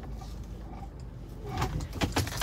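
Low, steady rumble of a car's engine and tyres heard inside the cabin while driving slowly, with a brief rustling noise about a second and a half in.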